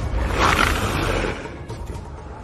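A giant wolf's growl, a film sound effect: one long growl that swells about half a second in and fades by a second and a half, over a steady low rumble.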